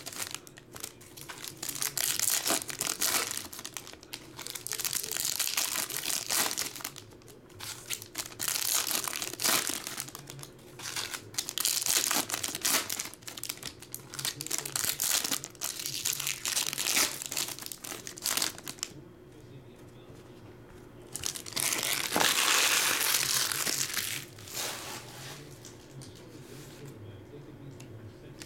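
Foil trading card packs being torn open and crinkled by hand, the wrappers rustling in repeated irregular bursts, with a brief quieter lull about three quarters of the way through.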